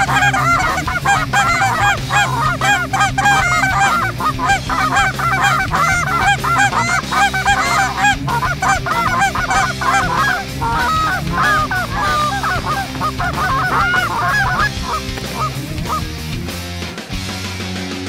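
Dense chorus of Canada goose honks, many overlapping, thinning out over the last few seconds, over a low steady music bed.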